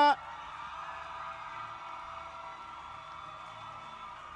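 A drawn-out shout cuts off at the very start. Then comes a faint, steady hall sound: a held keyboard chord with crowd noise beneath it, slowly fading.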